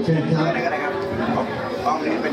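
Speech: a man says "choen khrap" ("please, go ahead"), then overlapping chatter of many people in a large hall.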